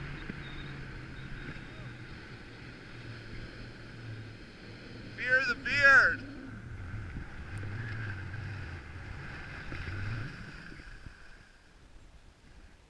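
Skis sliding and turning over snow, with wind rushing on the microphone, a steady low rumble and hiss that fades near the end. About five seconds in come two short, loud, arching calls.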